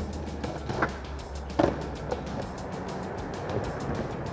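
Background music with a steady beat over a skateboard trick on concrete. Two sharp clacks come about a second and a second and a half in as the board is popped and lands, with a lighter knock shortly after.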